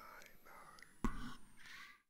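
A faint whispered voice with one sharp thump about a second in. The sound fades and cuts off near the end.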